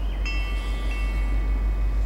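Norfolk Southern diesel freight locomotive's multi-chime air horn sounding one blast of about a second and a half, starting a moment in, over the train's low steady rumble as it approaches.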